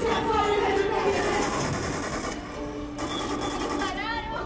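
Laser tag blasters going off in rapid electronic bursts, mixed with voices and background music.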